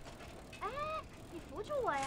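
A bicycle's freewheel clicking as the bike rolls along, with a raised voice calling out twice.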